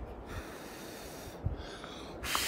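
A person blowing into smoking twig kindling to coax it into flame: one long rush of breath lasting about a second, with a low thump near the end.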